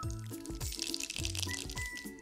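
Mustard seeds sizzling in hot oil in a small frying pan, under steady background music.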